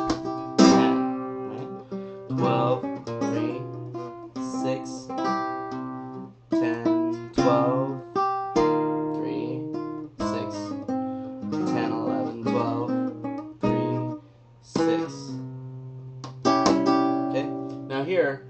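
Flamenco guitar playing a falseta por bulería: runs of plucked notes broken by sharp accented chords that outline the bulería compás accents.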